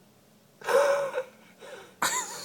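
A person's short, loud gasping exclamation with a voiced note about half a second in, then a fainter brief vocal sound near the end: a surprised reaction to the tortoise's wide-open mouth.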